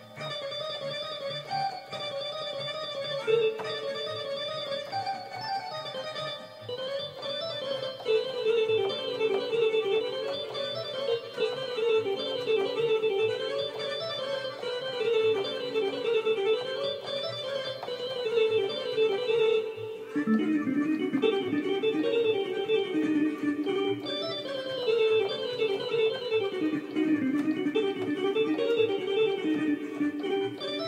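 Electronic keyboard playing a fast kolo folk-dance tune in quick, repeated running phrases. About two-thirds of the way through, the melody drops to a lower register.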